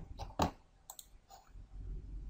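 A few sharp computer mouse clicks in the first second, the loudest about half a second in, with a low steady hum coming in about halfway through.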